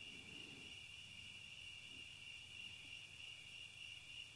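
Crickets trilling steadily and faintly.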